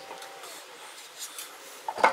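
Faint rubbing and scraping as the golf cart's electric drive motor is slid onto the rear-end input shaft by hand.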